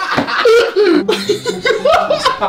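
Men laughing loudly together in quick, repeated bursts.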